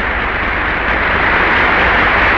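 Large theatre audience applauding steadily, growing slightly louder in the second second.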